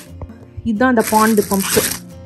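Clear plastic packaging crinkling and rustling as a boxed item is handled and lifted out of its foam insert. A voice comes in over background music from a little under a second in.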